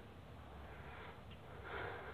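Quiet pause with faint background hiss and a soft breath near the end.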